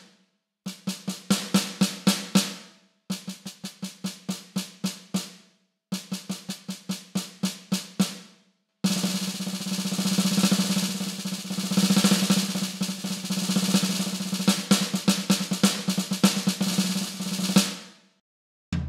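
Homemade electronic snare with a Roland mesh head and piezo trigger, struck with sticks and sounding a sampled snare from a Roland drum module. Three short runs of evenly spaced strokes with brief pauses between, then from about halfway a continuous roll with accents.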